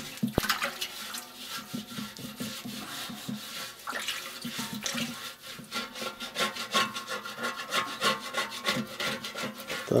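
A hand scrubbing the inside of a large aluminium pot with a little water, in quick repeated rubbing strokes with some sloshing.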